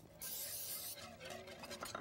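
Aerosol cooking spray hissing in one burst of under a second, sprayed into a metal muffin tin. Faint clinks follow.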